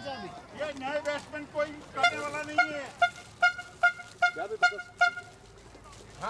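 Voices talking outdoors, then a quick run of short, evenly spaced toots on one steady pitch, about five a second, lasting about two seconds.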